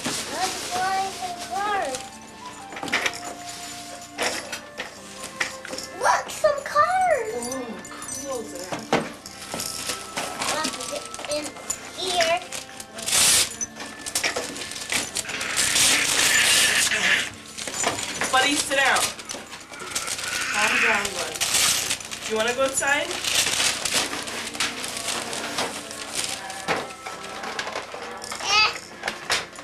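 Wrapping paper being torn and rustled as a present is unwrapped, in several rough bursts, the longest lasting about two seconds past the middle. A child's voice makes short sounds in between.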